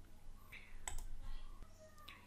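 A single computer mouse click a little before halfway through, faint over quiet room tone.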